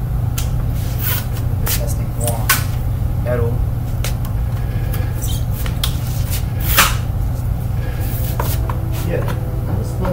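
Plastic vacuum cleaner attachments, an extension wand among them, being handled: scattered clicks and knocks over a steady low hum.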